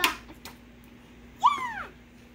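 A sharp knock right at the start, then about one and a half seconds in a young child's short, high-pitched squeal that rises slightly and falls away.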